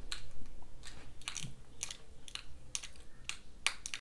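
A series of light, sharp clicks, about ten at uneven spacing over four seconds, like small taps or fiddling.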